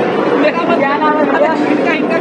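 Many voices talking over one another: steady crowd chatter in a busy indoor hall.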